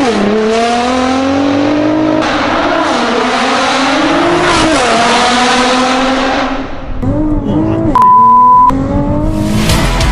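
Nissan GT-R R35's 3.8-litre twin-turbo V6 accelerating hard through the gears. The pitch climbs and drops at an upshift right at the start and again about four and a half seconds in. Later the revs fall and waver, and a steady high beep, the loudest sound here, cuts in for under a second about eight seconds in.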